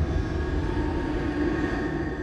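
A sound-design drone played through the Collision FX Kontakt instrument: a low rumbling texture with several steady held tones above it, slowly fading.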